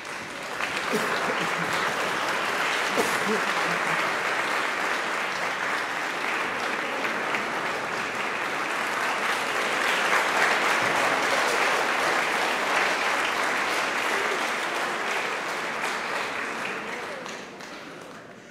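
A concert audience applauding, joined by the choir. The clapping starts about half a second in, holds steady for roughly sixteen seconds and dies away near the end.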